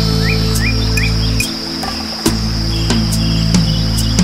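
Slow meditation music with sustained low notes that shift a couple of times, layered with nature sounds: a bird repeating short rising chirps about three times a second during the first second, over a steady high insect trill.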